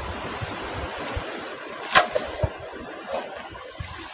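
Wind rushing over a phone microphone, with uneven low rumbles and a single sharp knock about two seconds in.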